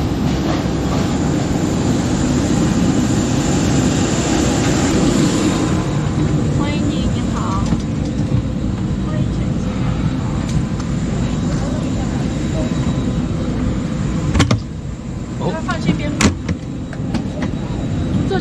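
Steady rumble of aircraft and ground equipment running on an airport apron, with a faint high whine, giving way to the quieter hum of an airliner cabin during boarding. Two sharp knocks come near the end, about two seconds apart.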